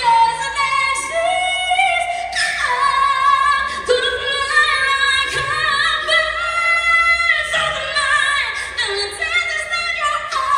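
A solo singer's voice through a stage microphone, holding long high notes with vibrato and sliding between pitches.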